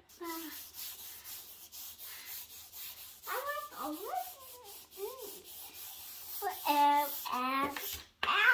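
Chalk scribbling on a wooden easel chalkboard, a scratchy rubbing in quick back-and-forth strokes, about three a second. A toddler vocalizes wordlessly in the middle, with a louder short vocal sound near the end.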